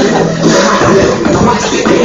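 Loud hip-hop music playing continuously.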